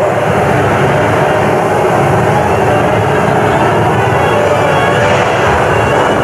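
Loud, steady roaring rumble of a stage show's sound effects over the theatre's speakers, recorded on a camcorder's built-in microphone.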